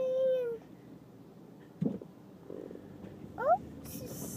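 A toddler's wordless vocal sounds: a held, high 'ooh' note that drops away about half a second in, a short low grunt about two seconds in, and a quick rising squeak near the end.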